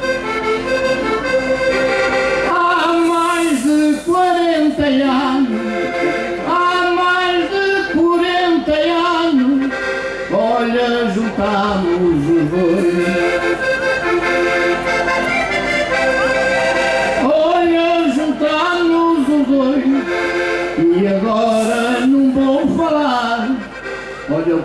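Accordion playing a lively, ornamented folk melody as an instrumental interlude between the sung verses of a Portuguese desgarrada.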